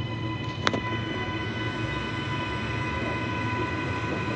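Queensland Rail electric multiple-unit train rolling into the station, with a low rumble under a steady whine from its traction motors. A single sharp knock comes just under a second in.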